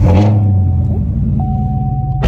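Car engine starting with a sudden burst, running up briefly, then settling into a steady idle. A thin steady high tone joins about halfway through.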